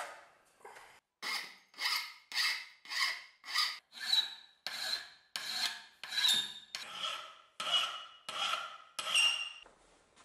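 Hand file worked back and forth over a small steel part clamped in a bench vise: about a dozen steady strokes, a little under two a second, each with a faint metallic ring, starting about a second in and stopping just before the end.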